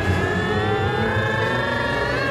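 Cartoon rocket-ship sound effect: a steady engine whine that rises slowly in pitch, over a low pulsing backing.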